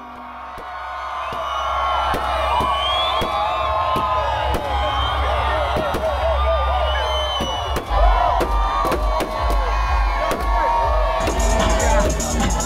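Fireworks going off with irregular sharp bangs and cracks over a crowd cheering and whooping, with music's steady deep bass underneath.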